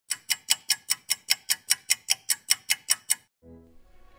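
Rapid, evenly spaced ticking, about five ticks a second, that stops a little after three seconds. Soft music then fades in with a low held tone.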